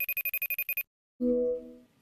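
Call ringtone: a rapid electronic trill like a telephone bell, about 16 rings a second, lasting roughly a second and a half and stopping suddenly. After a short gap comes a brief lower chime, as a call is placed and picked up.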